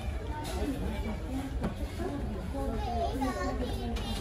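Indistinct chatter of several overlapping voices, children's among them, over a steady low rumble.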